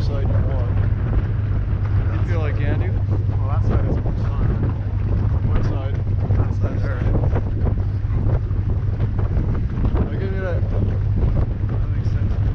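Jet boat's 6.2-litre V8 engine running steadily under way, a constant low drone, with wind buffeting the microphone and water rushing past the hull.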